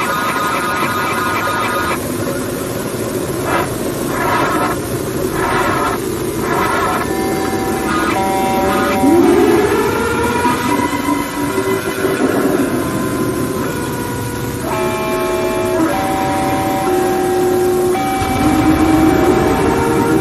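Loud, distorted cacophony of overlapping steady tones over noise, with a rising glide about nine seconds in and again near the end.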